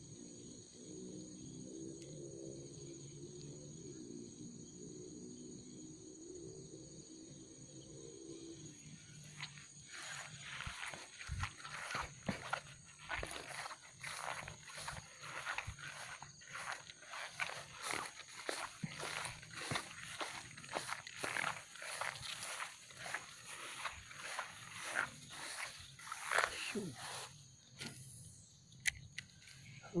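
Tall grass and brush rustling and swishing in irregular strokes as someone pushes through it on foot, starting about nine seconds in. Before that there is a low, wavering pitched sound. A steady high insect drone runs underneath throughout.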